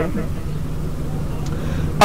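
A pause between a man's spoken sentences, filled by a steady low hum and rumble of background noise, with one faint click about one and a half seconds in.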